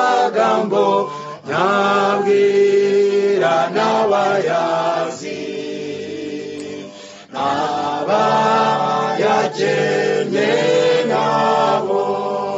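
A cappella choir singing in harmony, several voices holding long notes in phrases. The singing softens in the middle and swells again about halfway through.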